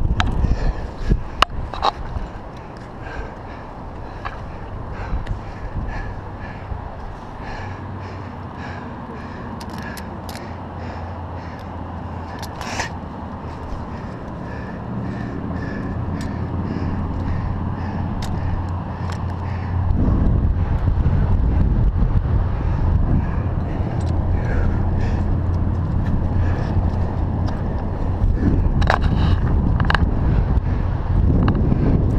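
Wind buffeting the microphone of a head-mounted camera, growing louder about twenty seconds in, with occasional scrapes and sharp clicks of a rock climber's hands, shoes and metal climbing gear against granite.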